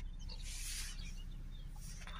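Audi 3.0 TDI V6 diesel engine idling just after being started, a low steady hum heard from inside the cabin, with a short click at the very start.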